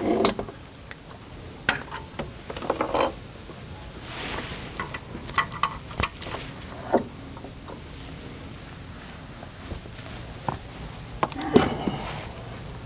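Scattered clicks, knocks and rustles as a small plastic Ubiquiti wireless antenna and its stand are handled and a cable is plugged into it.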